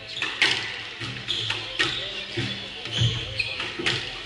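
Squash rally: about six sharp cracks of rackets striking the ball and the ball hitting the walls, echoing in the enclosed court. Short high squeaks of court shoes on the wooden floor come between them.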